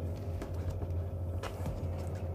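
Steady low hum in the room, with a few faint clicks and rubs from gloved hands working the outer sheath off a three-core flex cable.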